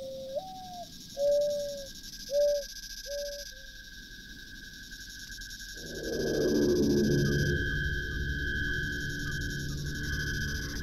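A bird cooing five low notes in the first four seconds, the first sliding upward, over a faint steady high tone; about six seconds in, a sustained musical chord swells in and holds.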